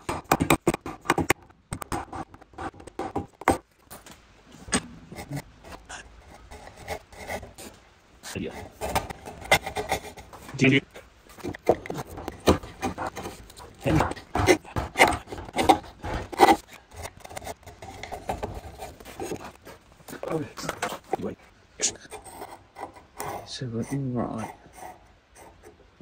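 A bevel-edged chisel paring the angled shoulder of a hardwood door rail by hand: a run of short, irregular scraping cuts into the wood.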